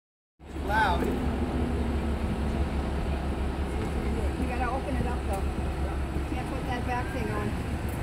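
Crane truck's engine running with a steady low rumble, faint voices of people talking over it.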